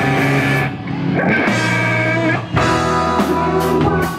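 Rock band playing live: electric guitars, bass guitar and drum kit, with two short breaks in the sound about three-quarters of a second and two and a half seconds in.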